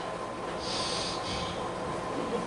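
A person breathing audibly near a microphone: two short, hissing breaths about a second in, over a faint steady tone.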